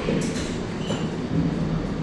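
Steady low rumble and hiss of background noise picked up by a phone's microphone on a video call, with no speech.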